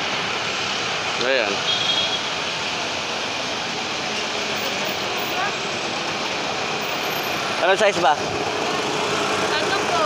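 Steady roadside traffic noise with engines running and idling. A person's voice calls out briefly about a second in, and again, louder, near the end.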